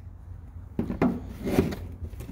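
Hard plastic fuse box cover being handled: a few short knocks and rubbing scrapes starting just under a second in, over a steady low hum.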